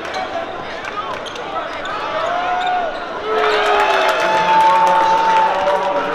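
Basketball being dribbled on a hardwood court amid the voices of an arena crowd. The crowd gets louder about halfway through.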